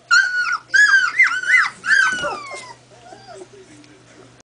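Two-week-old collie puppy whining in a run of about five high cries. The last cry is the longest and falls in pitch, and after it only faint sounds remain.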